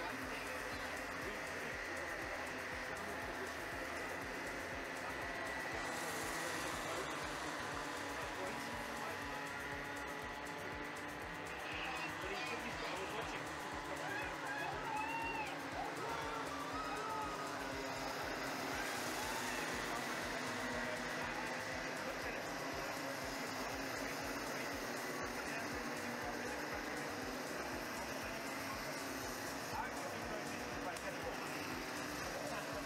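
A pack of racing karts' small two-stroke engines buzzing steadily as they run around the circuit, with voices in the background.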